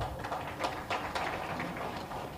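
A pause in speech: faint room noise with a few short, sharp clicks in the first second and a half.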